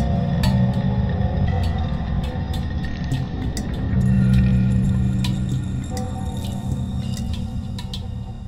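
Background music: a low, sustained drone with steady tones above it and scattered sharp clicks, swelling about halfway through and thinning towards the end.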